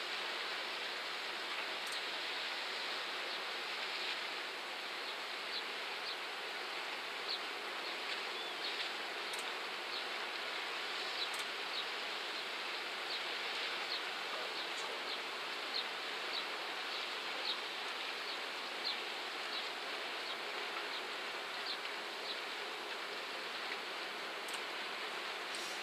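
Steady outdoor background hiss with faint, short high chirps repeating irregularly about once a second.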